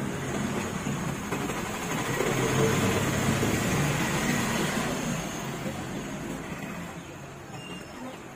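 A motor vehicle passing close by. Its engine and road noise swells over the first few seconds, peaks about three seconds in, then fades away.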